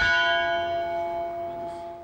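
A bell struck once at the start, ringing with several clear tones that slowly fade.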